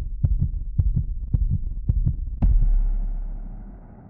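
Heartbeat sound effect: quick lub-dub thumps in pairs, about two a second, ending a little over two seconds in with one louder, deep hit whose low rumble slowly fades away.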